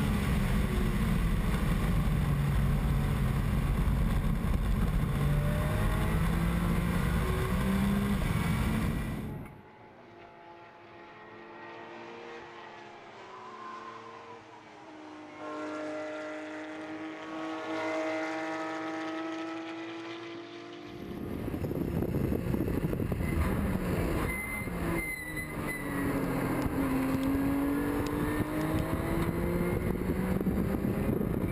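Race car engine at high revs heard through an onboard camera, its note rising and falling under heavy wind rush on the microphone. About ten seconds in the sound turns quieter and clearer as a Porsche race car passes, its engine note climbing to a peak and then falling away. About twenty-one seconds in the loud onboard engine and wind noise return.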